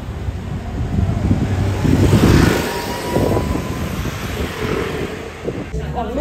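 A vehicle passing close by on the street, swelling to its loudest about two seconds in and then fading.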